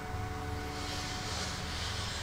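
A steady low rumble of a passing vehicle, with a hiss that swells in about a third of the way through and holds.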